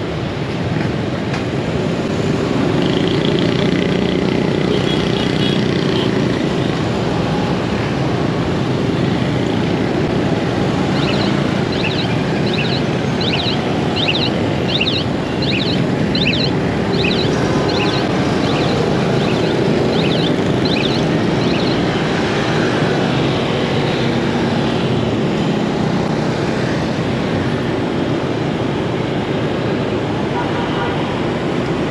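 Steady motorbike riding noise in heavy city traffic: the engine, the wind and the running of surrounding motorbikes and cars. From about a third of the way in, for roughly ten seconds, a run of short high-pitched chirping beeps repeats about one and a half times a second.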